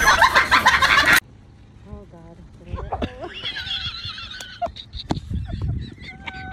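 Rushing, splashing floodwater for about the first second, cutting off abruptly; then people's voices, with a high wavering cry in the middle.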